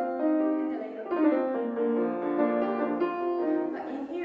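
Grand piano playing a short passage of sustained melody and chords, illustrating a theme moved to a different register.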